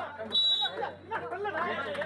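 Men talking over one another, with one short, shrill whistle blast about a third of a second in, like a referee's whistle at a kabaddi match.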